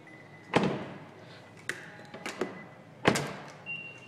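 Two car-door thuds, about half a second in and again about three seconds in, then a steady high electronic beep starts near the end: the 2014 Nissan Altima's warning that it has lost detection of its proximity key fob.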